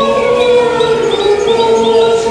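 Choir music with voices holding long, steady notes.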